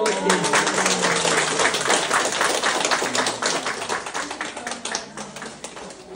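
Roomful of people clapping their hands in applause, dense for about four seconds and then thinning out to scattered claps, with a few voices under it.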